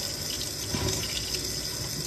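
Kitchen sink faucet running, a steady stream of water splashing onto hands as a small item is rinsed under it.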